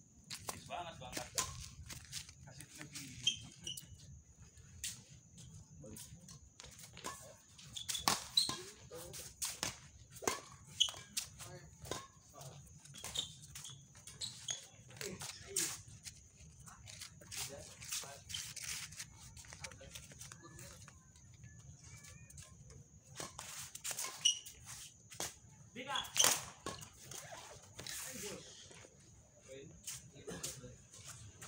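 Badminton rally: rackets striking a shuttlecock with sharp cracks at irregular intervals, and short high squeaks of shoes on the court, with players' voices in between.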